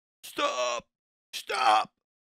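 A voice saying the word "stop" twice, about a second apart, each word short and clipped with silence between.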